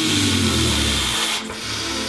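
A man forcing his breath out in a long hiss through clenched teeth while straining at maximum effort against an isometric pull bar; the hiss eases off about one and a half seconds in.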